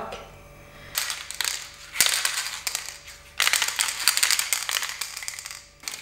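Aerosol can of clear lacquer being shaken, its mixing ball rattling fast inside the can, in several bouts, the longest in the second half.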